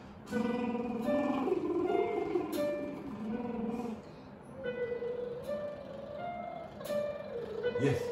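A young girl singing a vocal warm-up exercise, two short phrases that step up and down through a few notes, over an electronic keyboard accompaniment.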